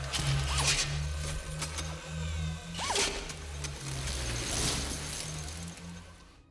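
Film sound design for a Sentinel robot hunting: a low mechanical throb that pulses and shifts in pitch, with sharp metallic hissing bursts about a second in and again about three seconds in, and short rising squeals. It fades out just after the end.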